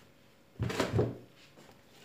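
A brief rustling, scraping handling noise starting about half a second in and lasting under a second, as the orchid's leaves and its small plastic pot are gripped, ahead of the plant being pulled out of the pot.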